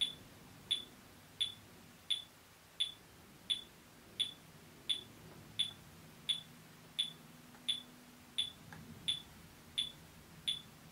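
A metronome ticking steadily at about 86 beats a minute, short sharp clicks evenly spaced, with no clarinet playing over it.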